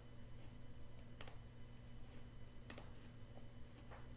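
Computer mouse buttons clicking: two sharp clicks about a second and a half apart, then a fainter one, over a low steady electrical hum.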